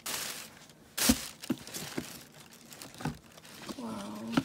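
Tissue paper rustling and crinkling as a boxed gift set is unpacked from a cardboard box, with a rustle at the start, a louder one about a second in, and a few light knocks of the box being handled.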